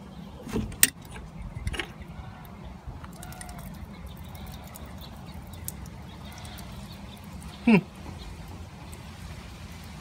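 Metal clicks and clinks of a wrench working a screw plug loose on a water pressure-reducing valve, with a sharp click just before a second in. Then quieter handling as the plug is turned out by hand.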